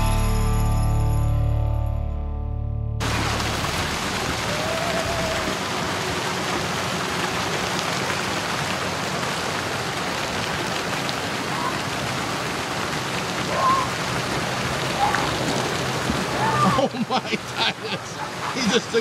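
A music chord fades and cuts off about three seconds in, giving way to the steady rush of water fountains spraying and splashing into a bumper-boat pool, with a few faint children's calls over it. Voices come in near the end.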